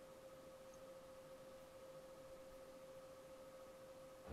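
Near silence with a faint, steady single-pitched tone, a mid-high hum held unchanged throughout.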